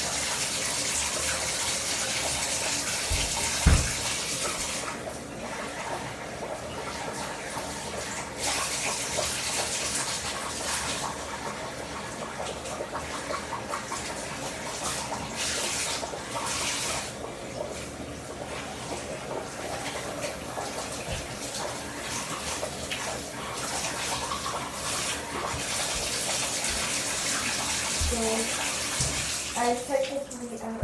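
Water running from a bathtub faucet into the tub while hair is being wet under it. The rush is steady for about the first five seconds, then turns uneven, rising and falling, with a single short knock a little under four seconds in.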